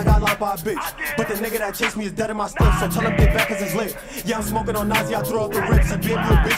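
Bronx drill track playing: a man rapping over deep bass hits and rapid hi-hat ticks.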